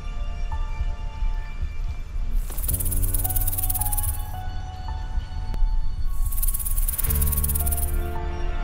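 Background music: held chords that change every second or so, with a bright hiss swelling over them twice, each time for about two seconds.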